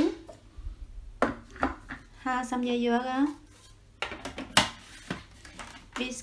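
Hard plastic parts of a food processor clacking and knocking as the bowl, lid and feed tube are handled and fitted together: a series of separate clicks, the sharpest about four and a half seconds in.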